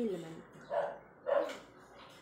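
A dog barking twice, a little over half a second apart.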